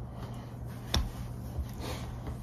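Quiet room tone with a low steady hum, broken by one sharp tap about a second in and a softer one near the end.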